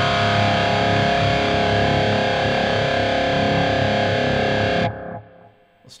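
Electric guitar through a Line 6 Helix high-gain amp patch with a Deluxe Comp compressor set to a short attack and long release, played as one held, heavily distorted tone. It stays at an even level without decaying, the sustain that the heavy compression and gain give, until it is muted about five seconds in.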